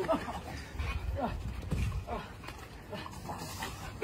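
A dog whining in short, rising and falling calls, over a low rumble and soft thuds of wrestlers moving on a trampoline mat.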